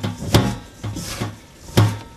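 Gloved hands squeezing and rubbing damp glutinous rice flour with sugar in a stainless steel mixing bowl: a run of soft dull thumps and rubbing, a few a second, with the loudest thumps about a third of a second in and near the end.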